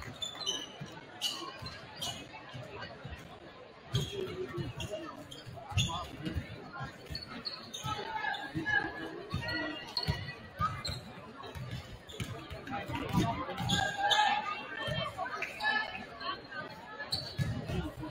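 Basketballs bouncing on a hardwood gym floor, many irregular thumps from several balls at once, echoing in the large gym over the murmur of crowd chatter.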